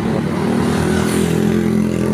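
Road traffic passing close by: a car and small motorcycles going past, their engines running in a steady hum that swells to its loudest a little past the middle.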